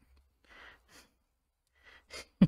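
Near silence: room tone, with two faint soft hisses about half a second and one second in.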